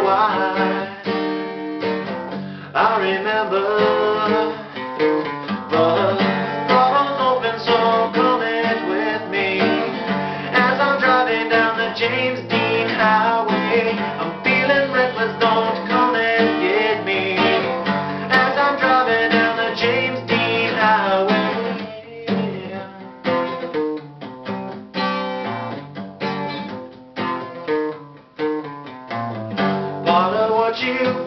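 A man singing with a strummed acoustic guitar, a solo live performance of a slow song.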